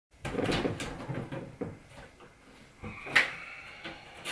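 Irregular knocks and clatter of household fittings being handled, with a single sharper knock about three seconds in.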